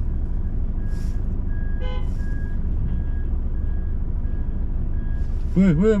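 Small car's engine running, heard from inside the cabin, with a faint parking-sensor beep repeating a bit under twice a second while the car reverses. A brief higher tone sounds once about two seconds in.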